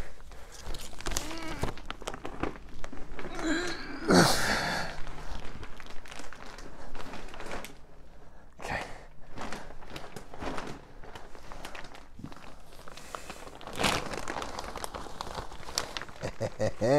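A plastic bag of raised bed soil being handled and tipped into a plastic tub: crinkling and rustling of the bag, soil sliding out, and knocks against the tub. The loudest burst comes about four seconds in.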